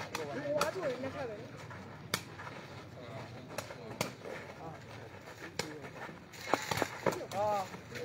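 Sharp knocks of a sepak takraw ball being kicked, about half a dozen at uneven intervals as in a rally, with people talking in the background.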